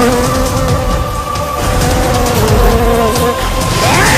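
A swarm of honeybees buzzing steadily, mixed with background film music.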